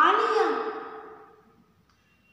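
A woman's drawn-out, expressive vocal sound, its pitch bending up and then down, fading away over about a second and a half.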